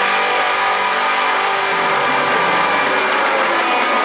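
A live pop-rock band playing loudly at a concert, with electric guitar.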